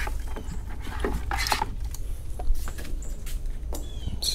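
A hand swishing in a bucket of soapy water and lifting out a wet sanding block: scattered splashes, drips and light knocks, over a low steady hum.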